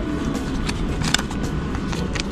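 Steady low rumble of station background noise, with a few short sharp clicks about a second in.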